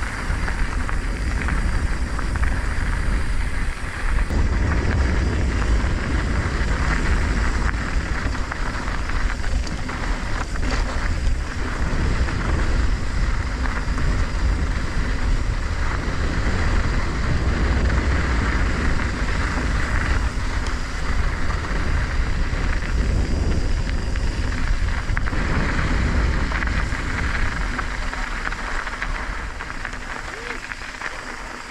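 Wind buffeting a GoPro's microphone with a steady low rumble, mixed with mountain-bike tyres rolling over a loose, gravelly dirt trail and a few brief rattles about ten seconds in.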